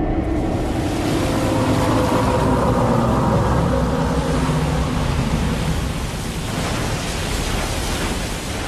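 Film sound effect of a giant ocean wave: a loud, steady rushing noise of surging water with a low rumble beneath.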